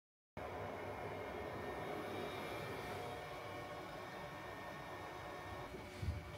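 Steady hum of cooling fans in a network equipment rack, starting abruptly a moment in, with several held tones over a noise bed; one of the tones drops out near the end.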